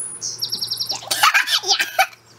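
A songbird singing a quick run of high, evenly spaced chirps in the first second, then a young woman laughing loudly.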